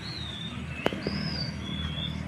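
Birds calling with thin, drawn-out whistles that gently rise and fall, several in a row, over a low steady hum. A single sharp click sounds a little under a second in.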